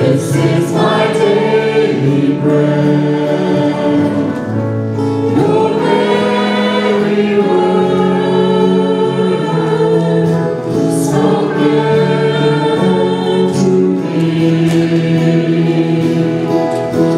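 Worship team and standing congregation singing a gospel hymn together, mixed men's and women's voices holding long notes, with a woman leading into a microphone over the group.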